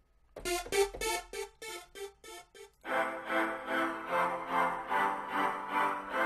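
Sawtooth synth from FL Studio's Sytrus 'Platinum Saw' preset: a string of about eight short, separate notes, then about three seconds in a looping pattern of sustained chords starts, pulsing about twice a second.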